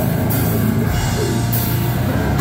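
A deathcore band playing live at full volume: pounding drums and dense distorted low end, with cymbal crashes at the start and again near the end.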